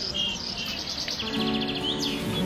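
Songbirds chirping in short whistled notes, with one quick trill about halfway through. Soft instrumental music comes in beneath them at about the same point.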